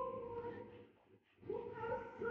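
Operatic singing: a held, high sung note fades and breaks off for a moment about a second in, then a new high phrase begins in the second half.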